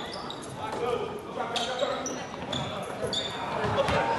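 Live basketball game sound in a gym: a ball bouncing on the hardwood floor and sneakers squeaking briefly several times. Voices of players and spectators carry the echo of a large hall.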